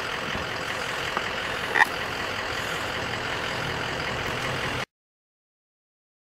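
Steady outdoor background noise with a vehicle-like hum and hiss, and one short, sharp chirp about two seconds in. The noise cuts off abruptly a little before the end, leaving dead silence.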